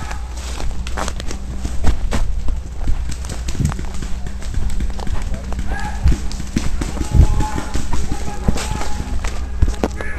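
Paintball markers firing in irregular strings of sharp pops during a game, with shouting voices in the middle and a steady low rumble underneath.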